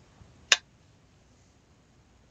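A single sharp click about half a second in as the polymer Lapco G36 folding stock swings shut and snaps into its folded position.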